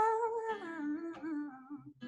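Female singer's wordless vocal over acoustic guitar, held with vibrato and then sliding down in pitch, fading out near the end.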